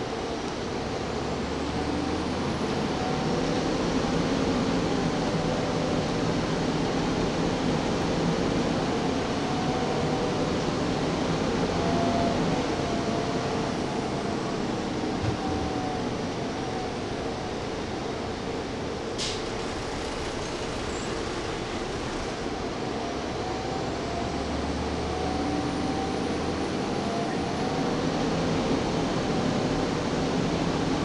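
Inside a Gillig Phantom transit bus under way: the engine note rises and falls as the bus pulls away, cruises and slows, over a steady hiss from the HVAC and cooling fans. There is a single sharp click about two-thirds of the way through.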